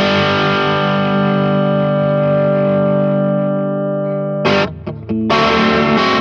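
Electric guitar played through a Veri-Tone Mr. Heath overdrive/distortion/fuzz pedal, set as a mid-gain overdrive that stresses the mids and high-mids. A distorted chord is struck and left to ring for about four seconds, then comes a run of short, choppy chords.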